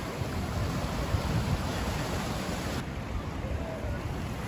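Ocean surf breaking and washing on the shore, heard as a steady rushing, with the upper hiss turning duller about three seconds in.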